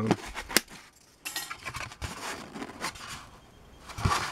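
A couple of sharp clicks at the tabletop vacuum former's clamp frame. Then, after a short gap, rustling and crackling as the thin vacuum-formed plastic sheet is lifted off and handled, with scattered small knocks.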